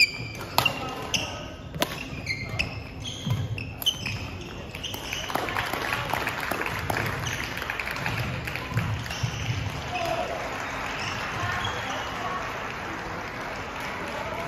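Badminton rally: sharp racket hits on the shuttlecock and short sneaker squeaks on a wooden court for about the first five seconds. Then play stops and the hall fills with spectators' chatter.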